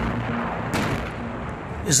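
An explosion in combat footage: a sudden blast with a low rumble that dies away into noise, then a second, fainter bang just under a second in.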